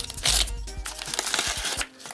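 Paper wrapping crinkling and rustling in the hands as it is pulled off a stack of trading cards, loudest in the first half second, over faint background music.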